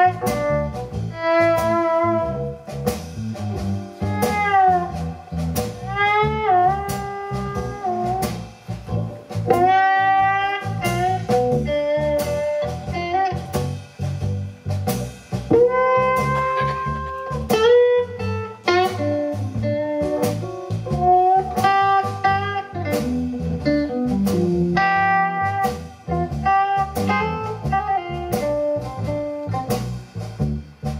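Live blues band playing an instrumental break: a Telecaster-style electric guitar solos with bent, sliding notes over electric bass and a steady beat.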